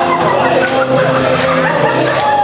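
Loud recorded music playing over a PA system, with sustained held notes and a few sharp percussive hits.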